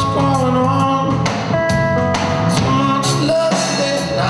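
Live blues-rock band music: a lap slide guitar playing gliding and held notes over a steady bass line.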